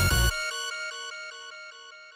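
Electronic beat playing back from a music-production session. The bass and drums cut out about a third of a second in, leaving a repeating pattern of bell-like synth notes that fades away.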